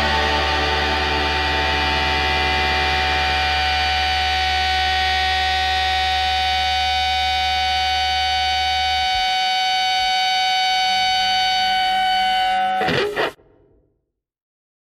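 Pop-punk band's final distorted electric guitar chord ringing out over a held bass note. The bass stops about nine seconds in, and the ringing chord is cut off suddenly about a second before the end.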